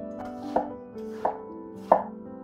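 Chef's knife chopping an onion on a wooden cutting board: three sharp knocks about two-thirds of a second apart, the last the loudest, over soft background music.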